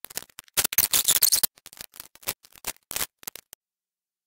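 A paper strip rustling and crinkling as it is wrapped around the arms of a bow-maker template: a dense burst of crackling about half a second in, then scattered light clicks and scrapes that stop shortly before the end.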